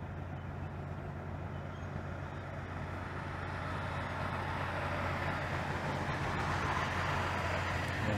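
Steady low machinery hum, with a broad rushing noise that grows gradually louder over the second half.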